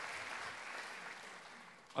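An audience applauding, the clapping dying away over the second half.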